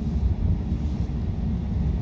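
Steady low rumble with a faint steady hum.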